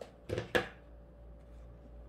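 Brief handling noises of ribbon being pressed and shifted between the fingers about half a second in, then quiet room tone with a steady low electrical hum.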